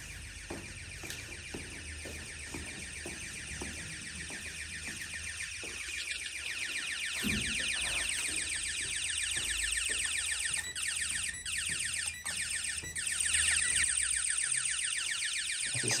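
Building intruder alarm sounding: a rapid, high-pitched pulsing tone that grows louder through the first half, with a few brief breaks later on. It has been set off by intruders.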